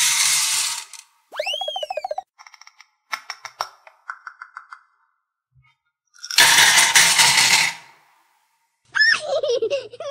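Small beads poured from a cup into a metal muffin tin, a rattling rush that ends about a second in, and a second pour of small blue pieces about six seconds in lasting nearly two seconds. Between the pours, cartoon sound effects: a boing with a wavering, falling pitch, a run of short plinks, and a squeaky glide near the end.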